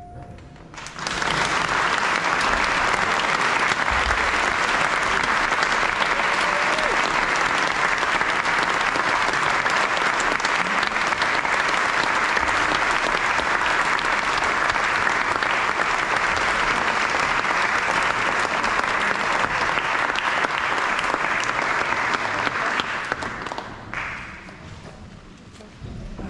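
The last held chord of a brass band fading out in a reverberant church, then sustained audience applause starting about a second in and dying away near the end.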